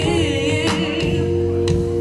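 Live soul band playing, with electric bass guitar and held chords under a sung note with wide vibrato that fades after about a second.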